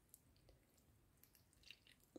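Near silence, with a few faint soft ticks and wet sounds as milk is poured slowly from a metal saucepan onto thick slices of bread to soak them.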